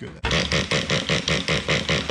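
A fast, even mechanical rattle, about ten strokes a second, from hands working on a model buggy's small nitro engine.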